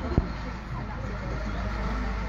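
Steady low outdoor rumble with faint distant voices, and a single sharp click just after the start.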